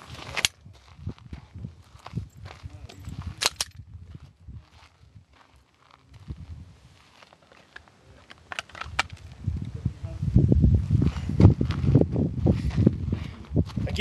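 Pistol dry-firing on an empty chamber: a few sharp trigger clicks, spaced seconds apart. Low rumbling and knocking fill the last few seconds.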